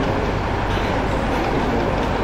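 Steady, loud rumbling background noise with no clear words.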